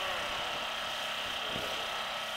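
Distant off-road motorcycle engines running, heard as a steady buzzing drone.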